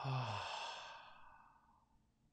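A man's long exhale through the open mouth, the release of a deep breath. It starts with a brief voiced sigh and trails off into a breathy hiss over about a second and a half.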